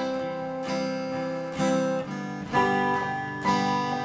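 Acoustic guitar strumming chords, about one strum a second, each chord left ringing.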